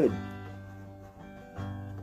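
Steel-string acoustic guitar strumming a chord that rings and slowly fades, then another chord strummed about one and a half seconds in.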